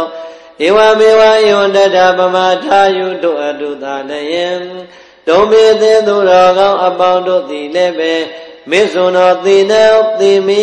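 Buddhist chanting: a voice intoning long melodic phrases, three of them a few seconds each with short breaks between.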